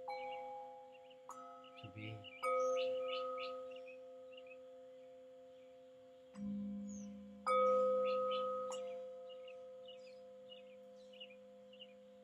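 Metal singing bowls struck with a small mallet about five times, each strike ringing on in steady tones and fading slowly; one lower-pitched bowl joins about six seconds in, and the loudest strikes come near 2.5 and 7.5 seconds in.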